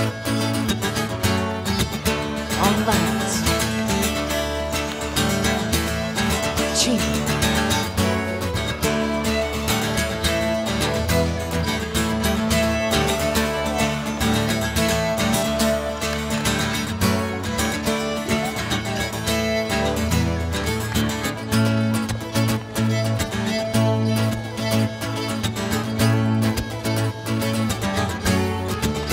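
Fiddle and acoustic guitar playing a contra dance tune with a steady beat.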